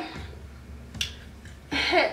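A single sharp click about a second in, then a short sound from a woman's voice near the end, over a low steady hum.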